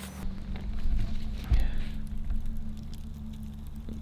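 Small wood campfire crackling faintly with scattered sharp ticks, under low rumbling bumps of handling noise about one and one and a half seconds in.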